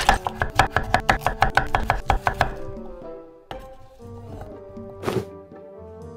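Kitchen knife chopping a peeled potato on a wooden cutting board: a fast, even run of cuts, about six or seven a second, that stops after about two and a half seconds. A single click and then a short noisy swish follow, over background music.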